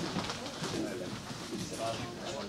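Faint, indistinct voices in the hall, low and broken, with no clear words.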